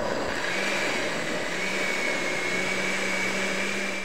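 Blender motor running steadily, pureeing diced butternut squash with milk and chicken stock into soup. It makes a constant whirring noise, with a high whine that settles in about half a second in.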